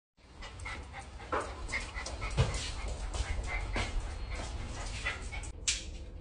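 A dog panting in quick, irregular breaths, with a sharp knock about two and a half seconds in.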